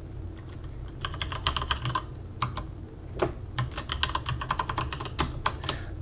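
Typing on a computer keyboard: quick runs of keystrokes starting about a second in, a few scattered taps, then a longer dense run near the end as a username and password are entered.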